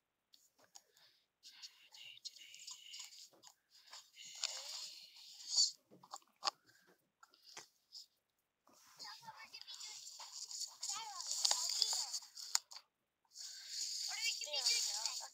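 Sound track of an outdoor home video playing back: stretches of crackly hiss, with voices talking through the noise from about nine seconds in.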